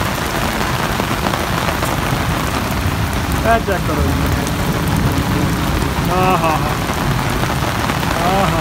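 Heavy rain pouring steadily, pattering on the ground and drumming on corrugated metal roof sheets. A couple of short pitched voice-like sounds cut through it about three and a half and six seconds in.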